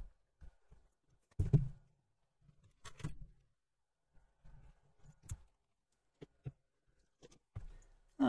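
Light taps and knocks from handling a thin acrylic sheet while strips of adhesive magnetic tape are pressed onto it. The two loudest knocks come about one and a half and three seconds in, with fainter ticks between and after.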